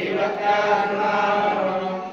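A group of voices chanting a devotional hymn together in long, held, unbroken lines.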